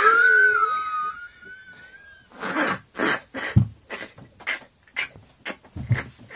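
A man's helpless laughter: a long, high, wavering squeal of about two seconds, then a run of short, breathy, gasping laugh bursts, a few a second.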